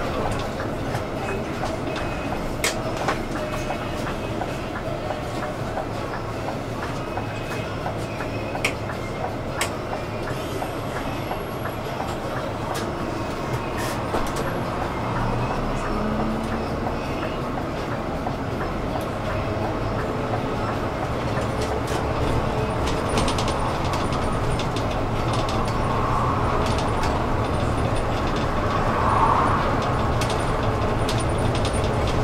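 Cabin noise of a moving city bus: a steady engine and road rumble, with frequent short rattles and clicks from the interior fittings. It grows slightly louder in the last third.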